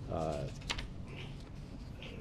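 A pause between a man's words: a brief fragment of his voice, then a few sharp clicks and taps, the loudest about a third of the way in.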